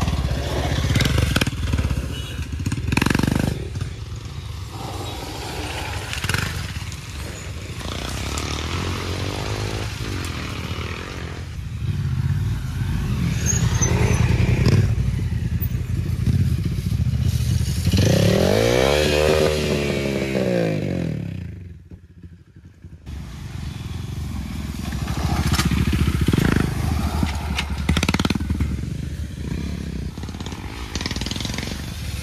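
Off-road motorcycles riding a dirt trail one after another, their engines revving up and easing off as they pass. About 18 seconds in, one engine's pitch climbs and falls as it passes close. The sound cuts out briefly about 22 seconds in.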